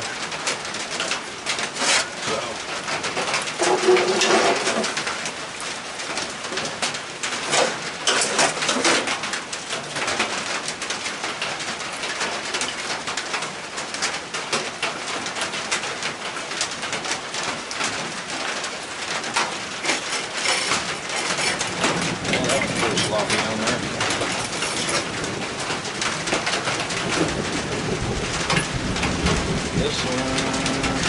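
Steady patter of rain with a dove cooing about four seconds in.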